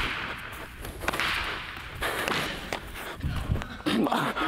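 A few sharp knocks and dull thuds with a breathy rushing noise in between, from a baseball fielding-and-throwing drill on turf.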